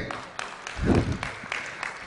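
An audience applauding in a hall, with a brief call from the crowd about a second in.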